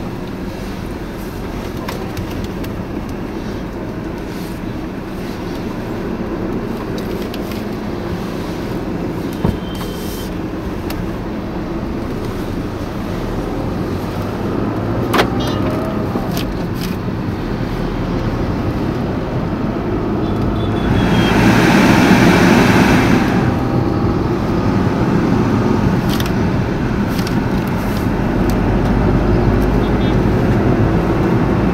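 Cabin noise inside a moving Tata Tigor: its 1.2-litre three-cylinder petrol engine and the road noise, growing gradually louder. A louder rush lasts about two seconds about two-thirds of the way through, and two sharp clicks come about a third and half of the way in.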